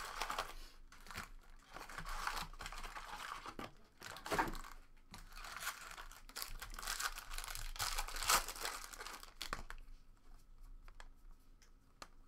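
A cardboard trading-card box being torn open and its foil-wrapped card packs crinkling and rustling as they are lifted out and stacked by hand. It goes much quieter a couple of seconds before the end, leaving light clicks.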